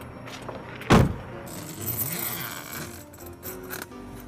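A car door shutting with a heavy thump about a second in, followed by a rasping rustle and a few light clicks, over background music.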